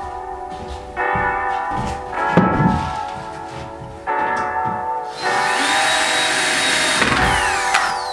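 Background music throughout; about five seconds in, a cordless drill starts and runs steadily for about two and a half seconds over it.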